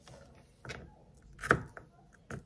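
Kitchen knife knocking on a plastic cutting board as fruit is cut: a few sharp knocks, the loudest about a second and a half in.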